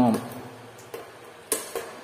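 Button presses on a wall-mounted sauna control panel: one sharp plastic click about one and a half seconds in, followed quickly by two or three lighter clicks.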